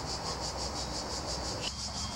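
Crickets trilling in a fast, even pulse, about eight pulses a second, over a low steady rumble; the rumble's middle range drops away suddenly near the end.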